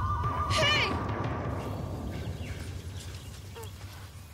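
A shrill animal cry about half a second in, sliding down in pitch with a wavering quaver, over a low rumbling drone of dramatic score that fades toward the end.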